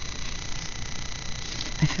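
A steady low hum and hiss of background noise with no distinct events, until a woman's voice begins just at the end.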